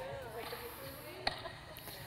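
A tennis ball struck once by a racket on a volley: a single sharp hit about a second in, over faint background noise.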